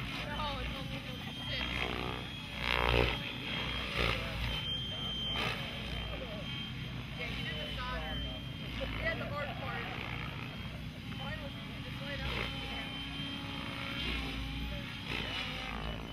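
Mikado Logo electric RC helicopter flying aerobatics: a steady rotor and motor drone with a thin high whine. People talk in the background.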